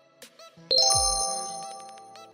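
Editing sound effect: a bright, bell-like chime hits about two-thirds of a second in over a low falling boom, then rings and fades. It marks a point awarded in the phone comparison.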